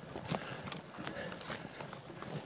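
Light, irregular clicks and knocks with faint rustling from a mountain bike and rider moving along a trail, about one knock every quarter to half second.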